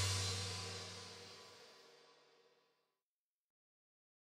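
The final chord of a folk-rock band ringing out with a cymbal at the end of the song, dying away over about a second and a half.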